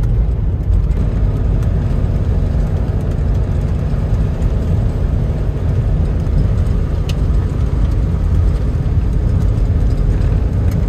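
Steady low rumble of a diesel Toyota van driving on a gravel road, heard from inside the cabin: engine and tyres on gravel together, with scattered faint ticks.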